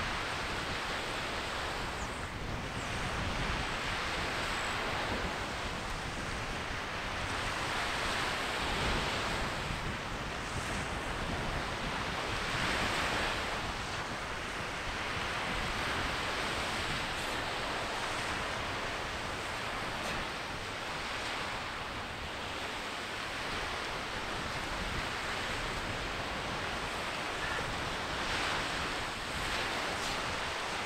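Sea surf washing in on the shore, swelling and easing every few seconds, mixed with wind on the microphone.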